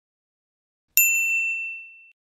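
A single bright notification-bell ding from a subscribe-button animation, struck about a second in and ringing out with a clear high tone that fades away over about a second.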